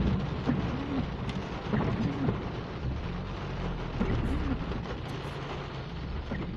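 Heavy rain falling on a car's windshield and body during a thunderstorm, heard from inside the car, over a steady low rumble.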